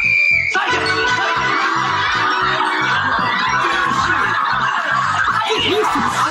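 A short, shrill referee-style whistle blast at the start, then studio audience laughter over background music with a steady beat.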